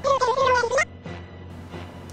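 A single short, high cry with a slight waver, lasting under a second and cutting off abruptly, with faint background sound after it.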